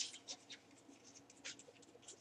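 Marker pen writing a word on paper: a run of short, faint scratching strokes, one per letter stroke.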